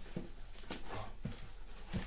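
Hard plastic PSA graded-card slabs clacking against each other and the table as they are lifted out of a box and stacked: a handful of short, light knocks spread through the moment.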